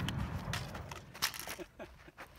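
The echo of a 13.2 mm Tankgewehr anti-tank rifle shot fading away, with a few sharp clicks and knocks as the heavy rifle is handled.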